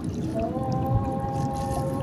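A steady held tone with a few overtones starts about half a second in and lasts about a second and a half, over a continuous low rustling background.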